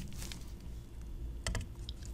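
Light clicks and one short, sharp knock about one and a half seconds in as an acrylic cylinder is set upright on the metal platform of a digital pocket scale.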